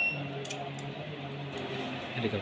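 A single switch click about half a second in, over a steady low hum.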